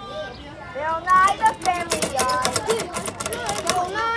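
Children's voices talking and calling out, loudest from about a second in, with a run of sharp clicks among them.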